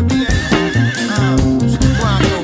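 Instrumental band music of electric guitar, bass guitar and drums. A high lead note wavers quickly for about a second, then slides downward, and slides down again near the end, over steady bass notes and drum hits.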